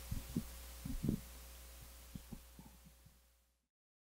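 Steady low electrical hum with a scatter of soft, low thumps, all fading out to silence near the end.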